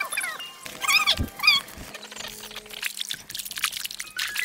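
A bird calling in short, repeated chirps that rise and fall in pitch, with a single low thump about a second in; faint scratchy noises follow.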